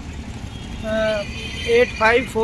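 A man's voice: a short held 'aa' sound about a second in, then speech beginning near the end, over steady low outdoor background noise.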